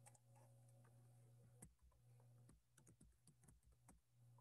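Near silence with a few faint, scattered computer keyboard clicks.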